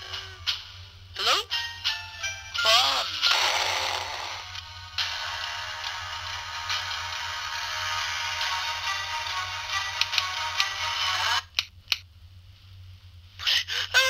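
Soundtrack of a home-made Flipnote animation. Short voice-like sounds with sliding pitch come in the first few seconds. A long held musical passage of many steady tones follows from about five seconds in and cuts off suddenly a little before the end, before voice-like sounds start again.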